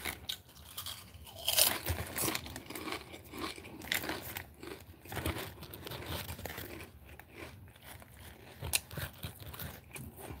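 Lay's potato chips being bitten and chewed close to the microphone: irregular crisp crunches, the loudest about one and a half seconds in.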